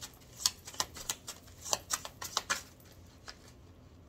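A deck of tarot cards being handled in the hand: irregular light clicks and snaps of cards being flicked and pulled from the deck, thinning out in the last second or so.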